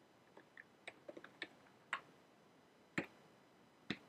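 Computer keyboard keystrokes: about ten single key presses at an uneven, unhurried pace as a long number is typed in digit by digit, the loudest about three seconds in and just before the end.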